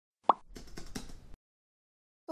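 A short pitched pop about a third of a second in, then about a second of soft noise that cuts off abruptly, followed by silence: a channel-intro sound effect.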